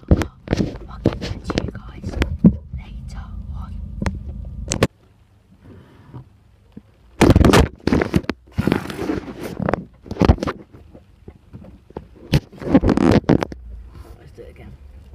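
Car engine idling with a steady low hum under quiet mumbled talk, then cutting off abruptly about five seconds in. Later come a few loud bumps and rustles of the phone being handled.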